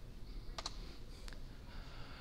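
Two short clicks, about two-thirds of a second apart, over quiet room tone.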